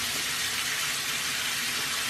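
Bathroom sink tap running steadily, a constant even hiss of water.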